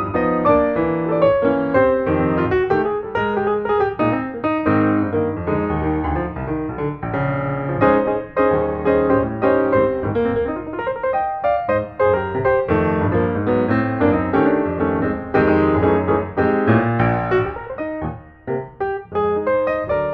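Background piano music: a continuous run of quick, closely spaced notes.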